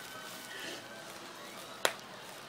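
A single sharp pop of a bubble-wrap bubble pinched between a toddler's fingers, near the end.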